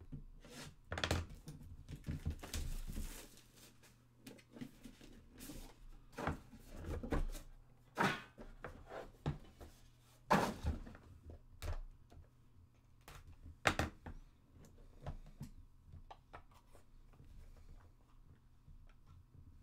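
A sealed cardboard trading-card hobby box being opened by hand: its plastic shrink wrap slit and crinkling as it comes off, then the lid and inner box knocked and slid against the tabletop, with a few sharper thunks. The cards inside are lifted out.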